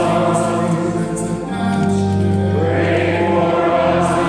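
Choir chanting a litany in long held notes, with a steady low tone sounding beneath the voices.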